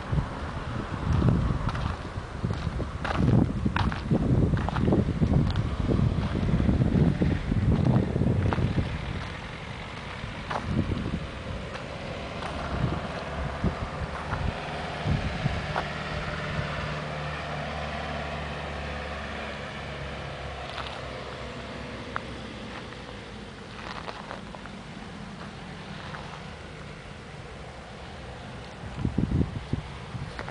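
Wind buffeting the microphone in gusts for the first nine seconds or so. Then a motor vehicle passes at a distance, a steady engine hum that builds and fades away.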